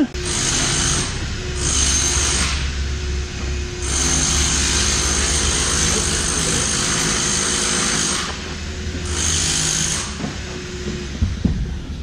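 A power tool running in four bursts of one to four seconds each, with a faint high whine, over a steady low hum; a single knock near the end.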